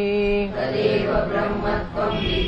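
Sanskrit text chanted: one voice finishes a held syllable, then, about half a second in, a group of voices recites the line back in unison.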